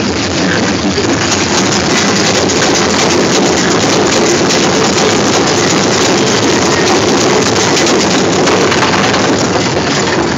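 Caterpillar-themed kiddie coaster train running along its track: a steady, loud rumble and rattle of the cars in motion.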